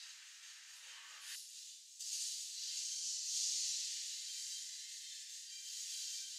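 Faint, tinny soundtrack of the anime episode being watched, with its low end cut away; about two seconds in a steady hiss sets in and holds.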